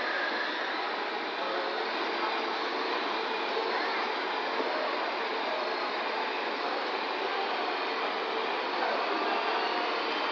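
Battery-powered ride-on toy quad bike driving across a tiled floor: a steady whirring of its electric motor and gearbox with the rolling of its plastic wheels, mixed with the din of a large indoor hall.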